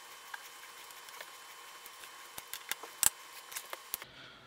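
Scattered light clicks and taps of tools and screw hardware being handled during chair assembly, irregular, with the sharpest couple of clicks about three seconds in, over a faint steady tone.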